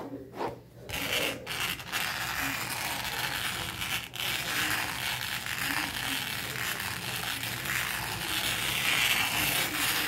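A bristle brush rubbed over a textured surface, making a continuous scratchy rubbing. It starts about a second in, after a couple of short separate strokes.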